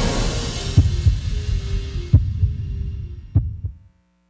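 Closing bars of a TV channel's intro theme music: a fading electronic music bed with a few held notes and about four deep thumps, dying away just before the end.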